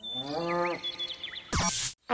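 A moo with a rising then level pitch, followed by a few short high chirps and a brief noisy burst near the end, as a logo sound effect.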